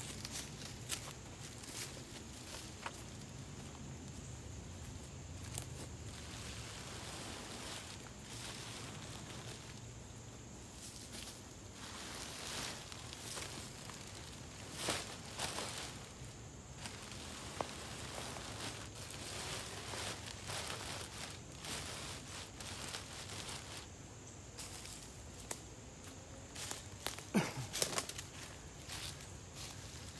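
Black plastic trash bags stuffed with dry leaves crinkling and rustling as they are handled and shifted into place, with footsteps in dry leaf litter. Irregular crackles throughout, busiest about halfway through and again near the end.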